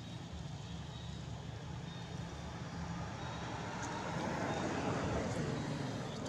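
Low engine rumble of a passing motor vehicle, growing louder to a peak about five seconds in and then easing off.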